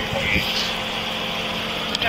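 A vehicle engine idling with a steady background hum, picked up on a body-worn camera.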